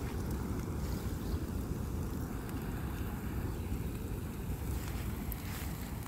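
A fully engulfed reclining loveseat burning: a steady low rumble of flames with scattered sharp crackles and pops throughout.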